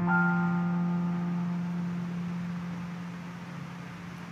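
Church accompaniment sounding a closing chord at the end of a hymn: the chord is struck and then slowly fades, its higher notes dying away first and a low note lingering.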